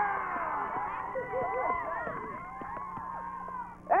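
A group of children shouting and cheering together, many high voices overlapping, dying down over the last couple of seconds.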